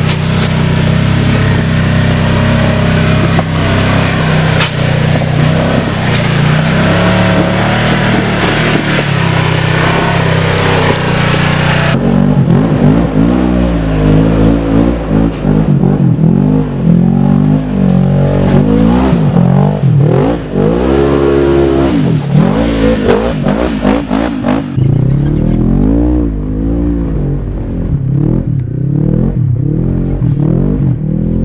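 Polaris RZR XP 900 side-by-side's twin-cylinder engine under hard throttle while crawling up rock ledges: at first a steady loud run, then, from about twelve seconds in, repeated revs that rise and fall every second or two, duller in the last few seconds.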